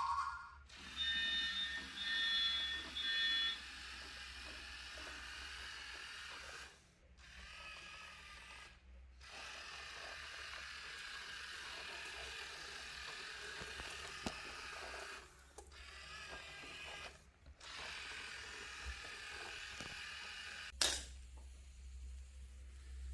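An electronic buzzer beeps about four times in short, evenly spaced pulses. A steady hiss follows, broken by a few abrupt dropouts, with a sharp click near the end.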